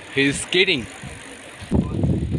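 A few short spoken words, then near the end a low rush of wind on the microphone and tyre noise from a bicycle riding along.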